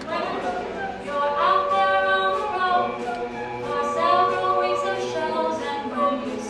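Mixed-voice a cappella group singing, several voices holding sustained chords under a lead melody line.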